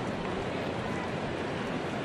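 Steady murmur of a ballpark crowd, an even wash of noise with no single sound standing out.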